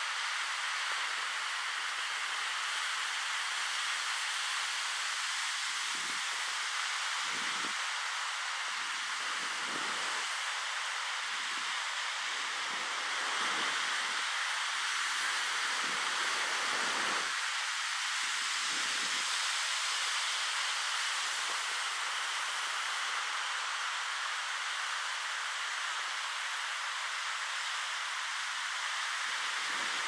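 Steady wash of ocean surf, a hiss with no low rumble, swelling slightly about halfway through.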